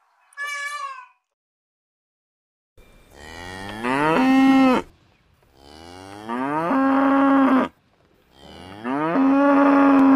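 A short, high-pitched peacock (Indian peafowl) call ending about a second in, then a cow mooing three times. Each moo is long, rising in pitch and then holding steady.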